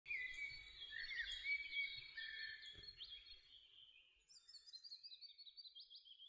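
Faint birdsong: several birds singing over one another in quick chirps and trills, fuller in the first three seconds and thinner after.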